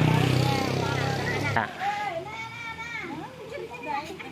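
A vehicle engine running with a low, steady hum under the chatter of a group of adults and children. The hum cuts off suddenly about a second and a half in, leaving only the voices.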